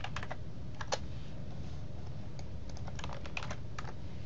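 Computer keyboard keystrokes: a few keys at the start, one sharper click about a second in, and a quick run of keys near the end, over a low steady hum.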